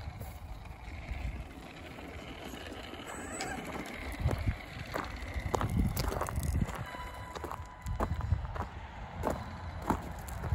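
Arrma Big Rock 3S RC monster truck driving down a gravel slope, its electric motor whining faintly and its tyres crunching over loose gravel. From about four seconds in, irregular thumps and crunches of footsteps on gravel mix in.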